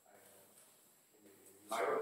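Faint room tone, then about a second and a half in a brief, distant voice, as from an audience member speaking off-microphone in a lecture hall.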